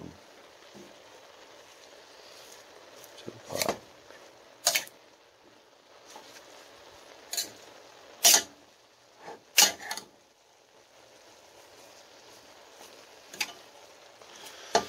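Metal serving spoon clinking and scraping against a stainless steel pot while stirring chopped kale, in a handful of sharp, irregularly spaced knocks, the loudest two about eight and nine and a half seconds in.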